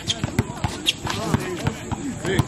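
Basketball dribbled on an outdoor hard court: a quick, uneven run of bounces, several in two seconds.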